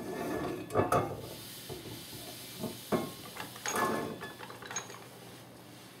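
Ford 7.5 rear axle shaft being slid out of its axle tube: light metallic scrapes and clinks, with a few sharper knocks, the sharpest about three seconds in.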